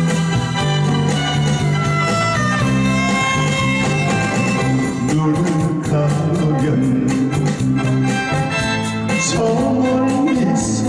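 Instrumental break of a Korean trot song: a soprano saxophone plays the melody over band accompaniment of keyboard, guitar and bass.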